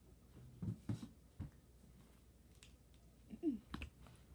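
Quiet room with a few soft knocks and handling sounds from a child moving by a toy doll bed, a couple about a second in and more near the end, with one brief falling vocal sound just before them.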